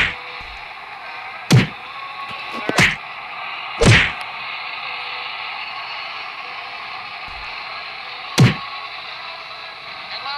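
Punch whacks in a mock boxing fight: about five sharp hits at irregular intervals, four in the first four seconds and one more near the end, over a steady hiss of background noise.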